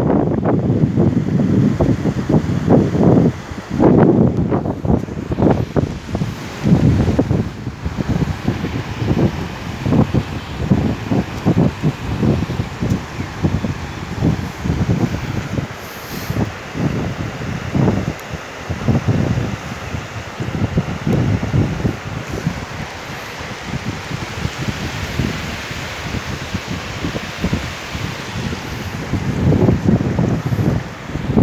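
Wind gusting irregularly across a phone microphone, with the steady rushing hiss of a river flowing around boulders underneath; the water grows more prominent in the second half.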